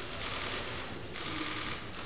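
Many camera shutters clicking rapidly in dense bursts.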